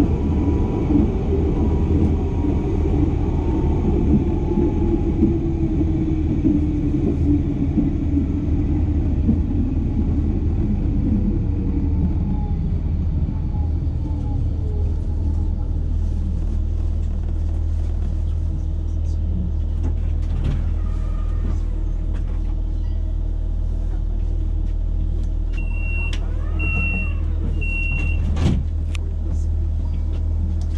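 Electric tram slowing to a stop: wheel-on-rail rumble and a motor whine falling in pitch over the first dozen or so seconds, then the standing tram's steady low hum. Near the end, three short high beeps of the door chime, followed by a knock.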